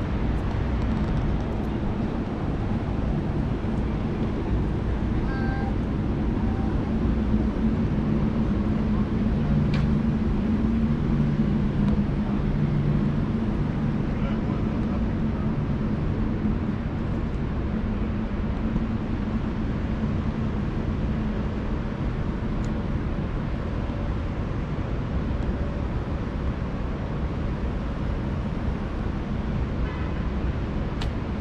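Steady low rumble of city traffic with a constant low mechanical hum.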